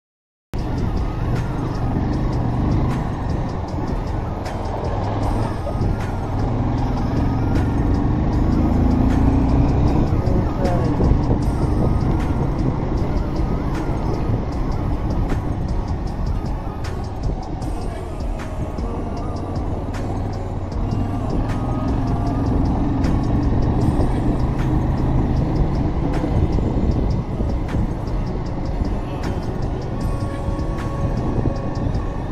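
Bajaj Pulsar 180 motorcycle's single-cylinder engine running under way on a rough dirt road, its pitch rising and falling with the throttle, along with road noise. It starts abruptly about half a second in.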